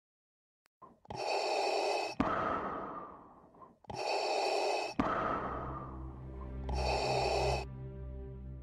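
Three heavy breaths, each about a second long and roughly three seconds apart, each cut off by a sharp click. From about halfway, low droning music comes in underneath.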